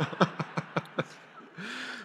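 A man laughing into his hand: a fast run of short chuckles in the first second, then a breathy laugh near the end.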